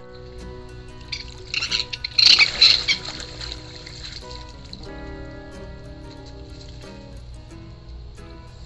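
Splashing of shallow water as a raccoon moves through it, loud and choppy for about two seconds starting a second in, over steady instrumental background music.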